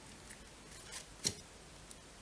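Tarot cards handled by hand: a few soft clicks as a card is drawn from the deck, the sharpest about a second and a quarter in.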